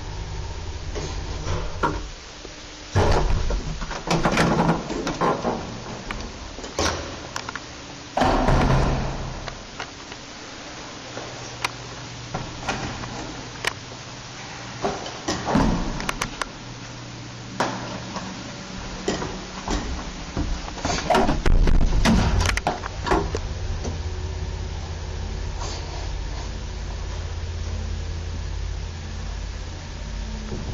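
Old passenger lift without inner car doors: a steady low hum of the car running stops, then a series of loud door clunks and bangs as the lift doors are opened and shut, and the low running hum of the car starts up again and holds for the last several seconds.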